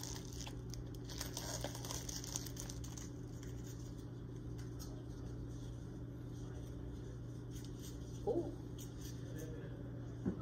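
Soft crackling and crinkling during the first few seconds, over a steady low hum, from food being handled and cooked at a kitchen counter and stove.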